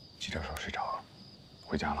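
A steady high cricket trill over quiet outdoor ambience. A short breathy, whisper-like vocal sound comes about a quarter second in, and a brief spoken question comes near the end.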